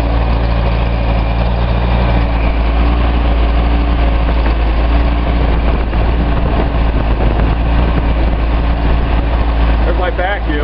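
Datsun L28 2.8-litre straight-six engine with L-Jetronic fuel injection idling steadily, just after a stone-cold start. It is running rich on the fuel injection's cold-start enrichment, which the owner puts down mainly to the cold water-temperature sensor.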